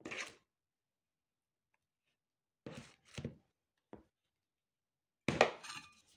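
Kitchen utensil scraping and knocking as cocoa whipped cream is scooped out and dolloped onto a sponge cake layer: a few short separate noises, the loudest near the end.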